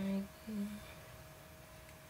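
A person humming two short, level notes in the first second, like an "mm-hm", over a faint steady whine in the background.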